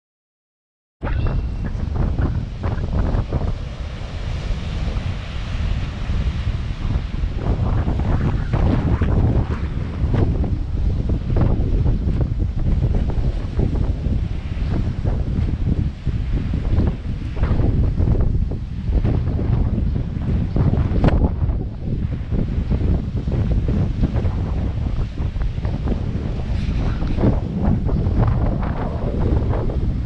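Strong gusting wind buffeting the microphone over storm surf breaking on a rocky shore. It cuts in suddenly about a second in and then keeps up a loud, uneven rumble.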